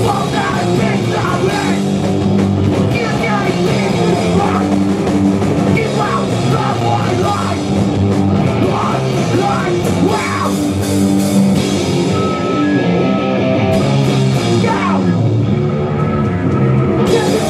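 Live rock band playing loud: electric guitars, bass and drum kit, with a singer's vocals over them.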